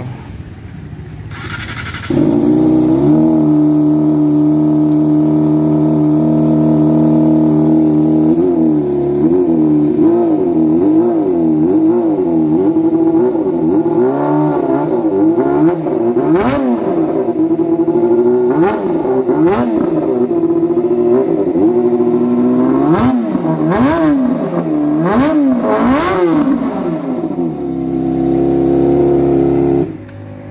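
Kawasaki ZX-25R's 250 cc inline-four engine, fitted with an aftermarket undertail exhaust, starts about two seconds in and idles steadily. It is then revved again and again, with pitch rising and falling in quick blips, before settling back to idle near the end.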